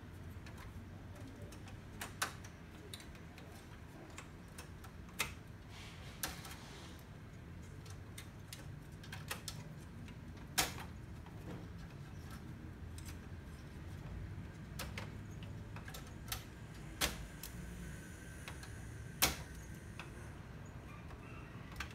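Scattered sharp clicks and taps, about a dozen at irregular intervals, from hands handling plastic and metal parts inside a partly disassembled HP LaserJet Pro 400 M425 laser printer, over a low steady background hum.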